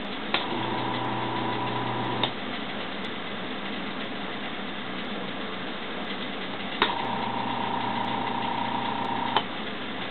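Small capacitor-run AC induction motor switched on with a click of its toggle switch, humming steadily for about two seconds, then clicked off. About seven seconds in it is clicked on again, hums for about two and a half seconds, and is clicked off.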